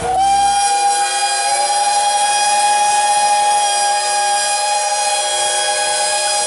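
A chorus of narrow-gauge Talyllyn Railway steam locomotive whistles sounding together in one long, loud chord of several pitches. The top whistle slides up to pitch at the start, and another joins about a second and a half in.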